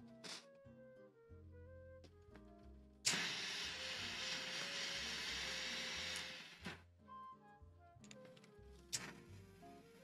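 Butane torch lighter burning with a steady jet hiss that starts suddenly about three seconds in and cuts off sharply about three and a half seconds later, over soft background music.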